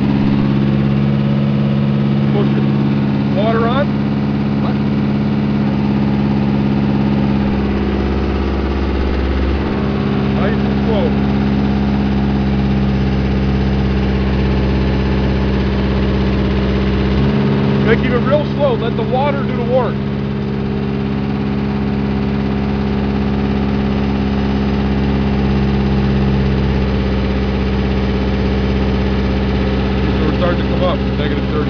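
Horizontal directional drill's engine running steadily under load as the drill rod is pushed and turned into the ground. Its note changes around 8 s in and again near 17 s as the load shifts.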